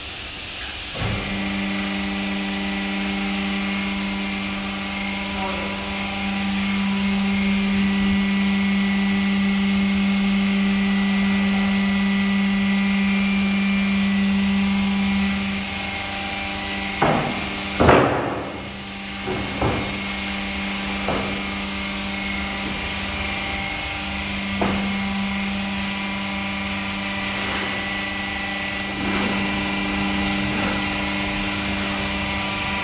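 Hydraulic power unit of a 60-ton cold press: the electric motor and pump start about a second in and hum steadily, with the hum swelling and easing as the load changes. Several sharp knocks and clicks come in the second half.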